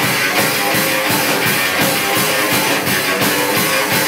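Live punk rock band playing loud: amplified electric guitar over a fast, steady drum-kit beat, in an instrumental stretch with no vocals.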